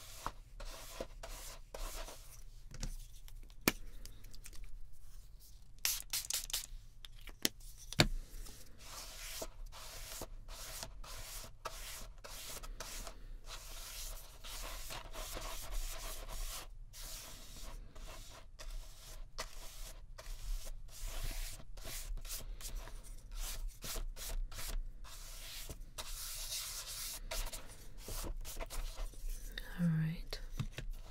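Flat bristle paintbrush stroked repeatedly over a paper journal page, laying down paint in a scratchy rubbing sound. A couple of sharp taps stand out, the loudest about eight seconds in.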